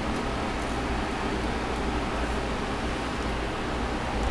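Steady background noise: an even hiss with a low hum underneath, and no distinct clicks or knocks.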